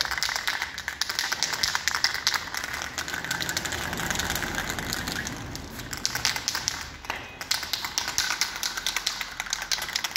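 Aerosol spray-paint can of primer being shaken, its mixing ball rattling in rapid clicks, with a short break about seven seconds in; the shaking mixes the paint before a coat is sprayed.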